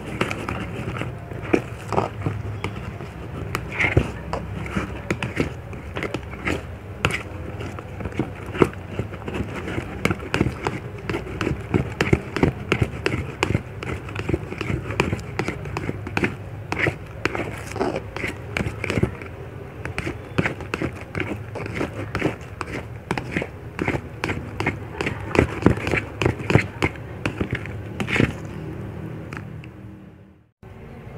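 Sticky blue slime being stirred and pressed with a silicone spatula in a plastic cup: a dense, irregular run of wet squishing clicks and pops that stops abruptly near the end.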